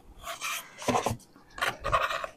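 Paper rustling and scraping in the hands in several short strokes as a paper quilt pattern is slid out and handled.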